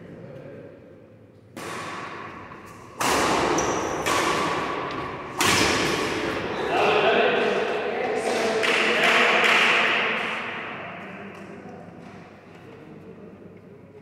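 Badminton racquets striking a shuttlecock during a rally: four sharp hits, roughly a second or so apart, each ringing out in the echo of a large indoor hall. After the hits, a louder noisy stretch with voices fades away.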